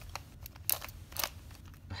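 Plastic Skewb puzzle being turned by hand: a few sharp clicks about half a second apart as its pieces snap round.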